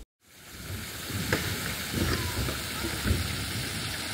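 Park fountain spray splashing steadily into its stone basin as a continuous hiss, fading in over the first second after a brief silence, with a few soft low bumps.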